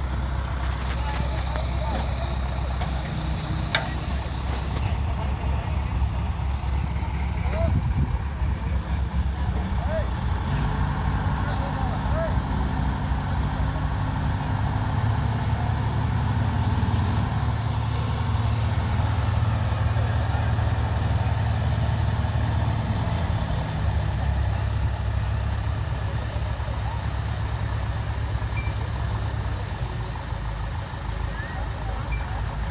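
Diesel engines of hydra mobile cranes running steadily during a truck recovery lift. The engine note rises about ten seconds in and eases off again near the end.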